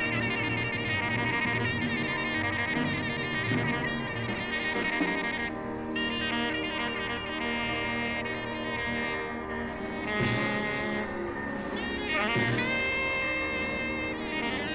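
A live jazz quartet recording: soprano saxophone soloing with long held notes over piano, double bass and drums.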